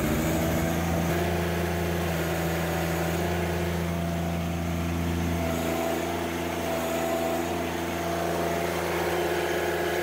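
John Deere sub-compact tractor's three-cylinder diesel engine, just started, running steadily at high speed for a hydraulic pressure reading at wide-open throttle. About six seconds in, the engine note shifts slightly as the loader control is worked to load the hydraulic system.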